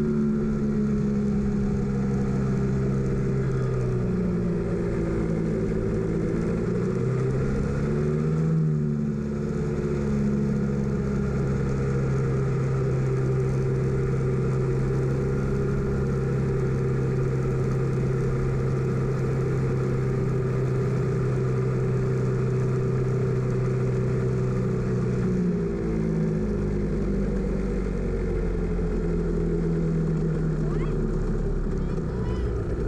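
Engine of an F Modified open-wheel race car running at low revs, close up on board, as the car slows to a crawl. The note is steady, with a few small dips and rises in pitch.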